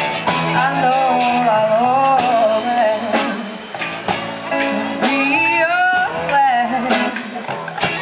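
A live band playing amplified through PA speakers: a woman singing a wavering melody into a microphone over electric guitar and upright double bass, with drum hits.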